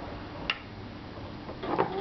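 A single sharp, ringing clink about half a second in: a metal table knife knocking against a hard surface. A brief voice sound follows near the end.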